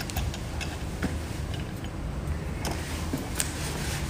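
Light clicks and taps scattered irregularly over a low steady hum.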